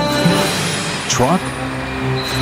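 Cartoon background music with a short rising sound effect about a second in, as the character changes into a toy front loader.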